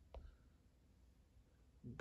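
Near silence: quiet room tone, with one faint short click just after the start.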